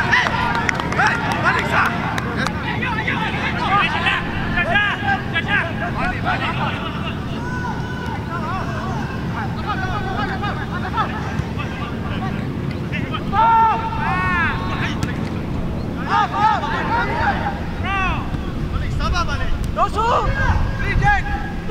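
Players' shouts and calls on a football pitch over a steady rumble of crowd and wind noise, with bursts of louder shouting about two-thirds of the way through and again near the end.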